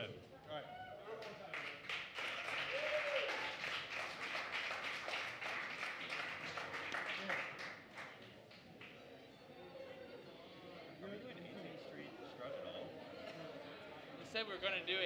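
A small audience applauding, dense clapping that fades out about eight seconds in, followed by faint room chatter.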